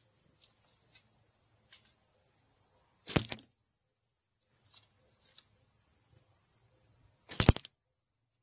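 Two sharp whooshing cracks about four seconds apart from a long wooden shaft being swung hard through the air. A steady high chirring of insects in the grass runs between them.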